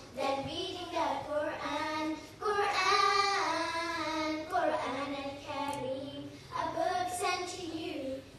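A group of schoolchildren singing a nasheed together through microphones, in sung phrases with short breaks between them.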